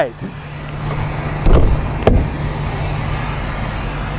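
Coach luggage-bay door being swung down and shut: two loud metallic clunks, about a second and a half in and again half a second later, over a steady low hum.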